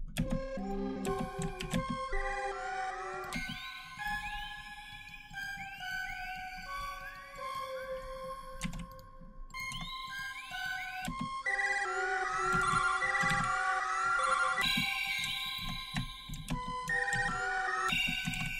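Omnisphere software synthesizer patch playing a short melodic phrase of sustained notes, some bending upward in pitch, over low repeated thumps.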